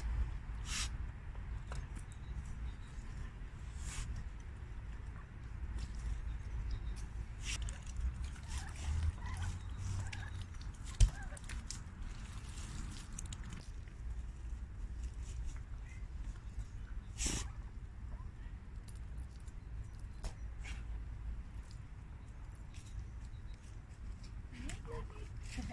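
Stones and soil being handled at the edge of a garden pond: scattered knocks and scrapes over a steady low rumble, with one sharp knock about eleven seconds in.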